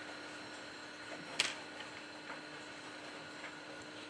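Quiet room with a faint steady hum, and one small sharp click about a second and a half in, with a few fainter ticks, from metal tweezers working at the connectors on a phone's lower circuit board.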